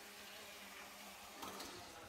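Near silence: faint room tone with a low steady hum, and one brief faint sound about one and a half seconds in.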